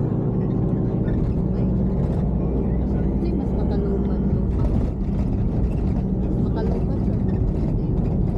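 Steady low road and engine rumble heard from inside a moving passenger van, with indistinct voices of passengers underneath.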